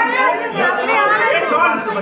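Several people talking over one another at close range: the chatter of a crowd pressing in around the camera.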